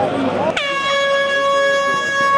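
An air horn blasts once about half a second in, one steady, level tone held out rather than pulsed.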